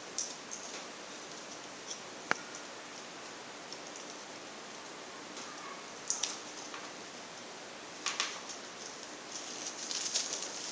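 Small handling sounds from a bike light and its battery cable being fiddled with: one sharp click about two seconds in, then brief rustling and knocking around six seconds and again around eight.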